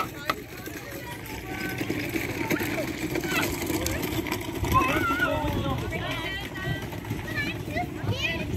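Background chatter of people and children talking, with a sharp clack just after the start as the hinged panel on a quiz board is flipped up.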